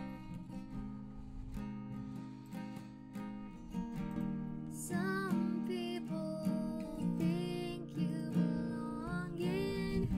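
Strummed acoustic guitar accompanying a song, with a woman's singing voice coming in about halfway through.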